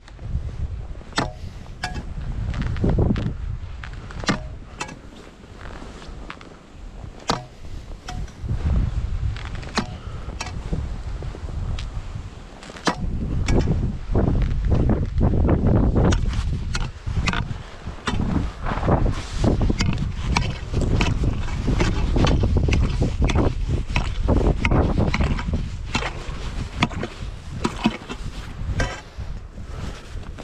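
Footsteps crunching across snow-covered lake ice, with a steel ice spud knocking and jabbing into the ice in many short, irregular strikes. Wind buffets the microphone with a heavy rumble, strongest in the second half.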